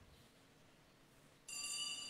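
A small bell struck once about one and a half seconds in, giving a bright, high ringing of several tones that fades slowly.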